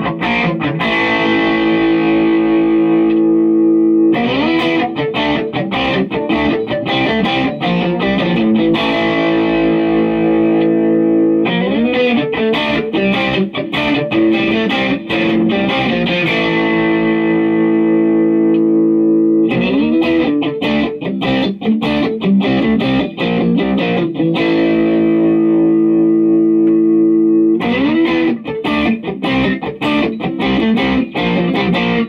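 Crate Strat HSS electric guitar played with overdrive distortion. Bursts of picked chords are each followed by a held chord ringing out, and the phrase repeats about every eight seconds.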